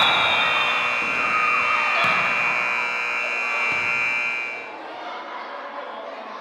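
Gym scoreboard buzzer sounding one long steady tone that cuts off about five seconds in, over the noise of a crowd in a gym.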